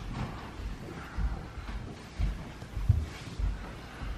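Faint scraping of a plastic smoothing tool drawn along a caulk joint between tile and countertop, with a few short low thumps.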